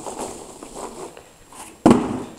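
Irregular rustling and crackling handling noise, with a single sharp knock near the end.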